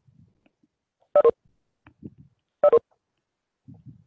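Two short electronic beeps, each a quick double pulse, about a second and a half apart, with faint low background murmur between them.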